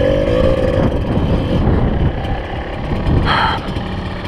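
Kawasaki KDX 220 dirt bike's two-stroke single-cylinder engine running at low revs as the bike crawls over rock. A held engine note in the first second and a half drops away, leaving a low rumble, with a short hiss a little after three seconds.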